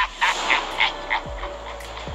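A man's manic cackling laugh, quick repeated "ha" pulses about four a second that die away after a little over a second. A low electronic hum runs under it, with a falling bass sweep about a second and a half in.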